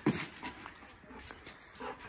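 German shorthaired pointer at play with a rope toy, giving a short whine near the end. There is a brief sharp sound at the very start.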